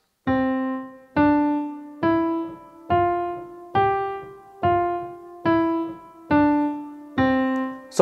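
Yamaha N1X digital piano playing nine single right-hand notes, C4 stepping up to G4 and back down to C4 (C D E F G F E D C), about one a second. Each key is lifted before the next is struck, so every note dies away with a short gap before the next.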